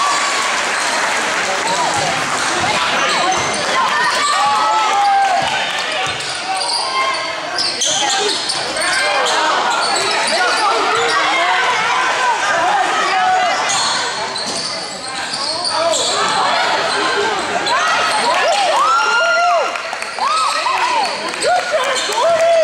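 Sound of a basketball game in a gym: spectators' voices and shouts, with a basketball being dribbled and short squeaks from the players' sneakers.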